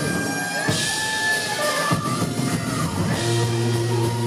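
Live hard rock band playing loud, with electric guitar and drum kit.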